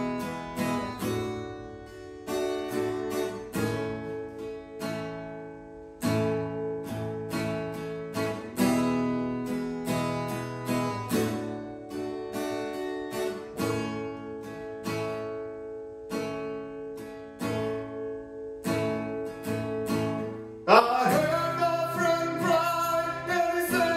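Acoustic guitar playing slow chords, each struck and left to ring down, a new one every second or two. Near the end a louder sustained voice comes in over the guitar.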